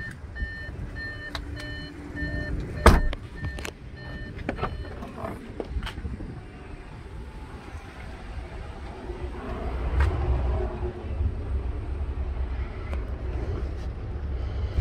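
A vehicle's electronic warning chime beeps evenly about twice a second. A loud thump like a car door shutting comes about three seconds in, a few clicks follow, and the chiming stops soon after. A low rumbling noise builds in the second half.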